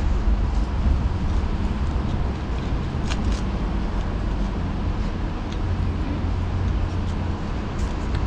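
Steady low rumble of street traffic, with two faint clicks about three seconds in.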